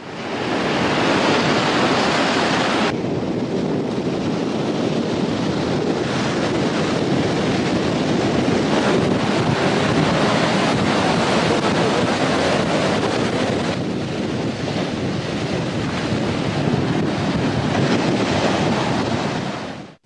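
Sea surf breaking and washing on a beach, a steady rushing with wind buffeting the microphone. The sound turns duller about three seconds in and brighter again near fourteen seconds.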